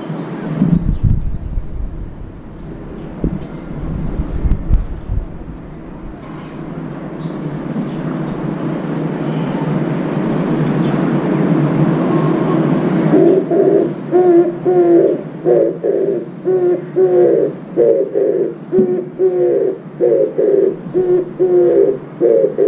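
Oriental turtle dove cooing: from about halfway in, a repeating rhythmic series of low, hooting coos. Before that there is only a steady rumbling background noise that slowly grows louder.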